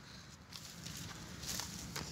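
Quiet outdoor background noise with no distinct event, a faint even hiss.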